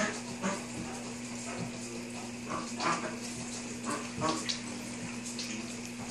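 Great Dane panting hard after running, soft breathy puffs over a steady low hum in the room.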